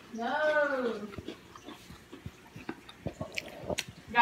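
A person chewing a bitten Oreo sandwich cookie, with soft irregular crunches and mouth clicks. In the first second there is a brief wordless voice sound that rises and then falls in pitch.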